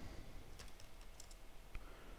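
A few faint key presses on a computer keyboard, scattered clicks while a command line is being edited.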